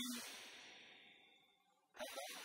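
A man's voice gives a brief sound, then breathes out long and breathily into the microphone. The breath fades away over about a second and a half.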